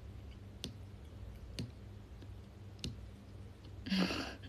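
Three faint, sharp clicks about a second apart over a steady low hum.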